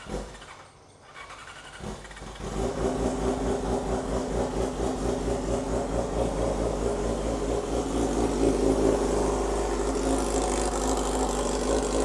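Straight-piped Yamaha R6 inline-four sportbike engine starting up about two seconds in, then idling steadily.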